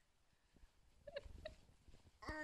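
Two short, high-pitched squeaky vocal sounds from a toddler, about a third of a second apart, a second in, over near silence.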